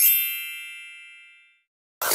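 A bright chime, the sound logo of an animated intro sting, struck once and ringing out as it fades over about a second and a half.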